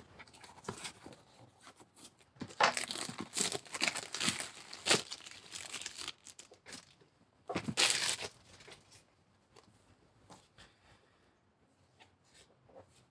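Plastic shrink-wrap on a cardboard box being slit with a knife, then torn and crinkled off in irregular bursts of crackling that die down after about eight seconds.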